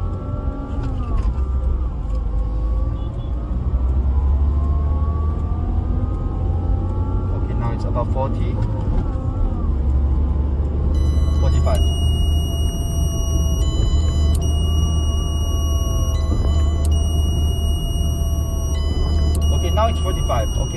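Car engine under acceleration, heard inside the cabin with a deep road rumble: its pitch climbs, drops briefly about eight seconds in, then holds steady at the normal limited speed. From about halfway, high electronic tones sound on and off in steps over the engine.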